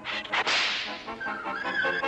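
Cartoon sound effect: a sudden whip-like swish about half a second in that fades over most of a second, followed by a few held music notes.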